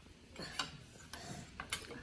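Faint, scattered clicks and taps of metal spoons and forks against plates while noodles are eaten.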